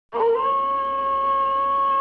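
One long wolf howl from the Wolf Films end logo. It starts suddenly out of silence, settles within half a second and holds a steady pitch.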